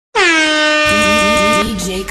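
DJ-style air horn sound effect: one long, loud blast that dips briefly in pitch as it starts, holds steady and cuts off suddenly about a second and a half in. A voice starts up beneath it about a second in.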